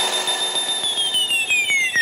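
Breakdown in an electro dance track: the bass drops out and a high synth tone holds, then glides steadily downward with its overtones about a second in, over faint ticks.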